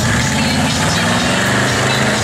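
C3 Chevrolet Corvette's V8 engine running at low revs as the car pulls away, its pitch rising a little in the first second.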